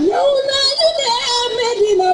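A woman singing a long, ornamented melodic line over musical accompaniment, her voice sliding up at the start and wavering between neighbouring notes before settling lower near the end.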